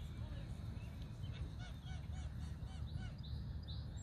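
Canada geese giving short, repeated honking calls, several a second, over a steady low rumble.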